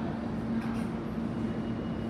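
An R160 subway train standing at an underground platform, giving a steady hum with a constant low drone, and a faint high whine coming in about halfway through.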